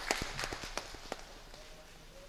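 A few scattered hand claps, irregular and thinning out after about a second.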